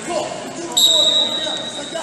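Referee's whistle blown once, a single steady high note about a second long, restarting the wrestling bout, with voices in the hall.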